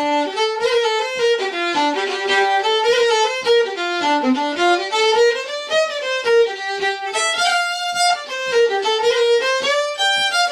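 Unaccompanied fiddle playing an Irish jig in G minor: a continuous, steady run of bowed notes.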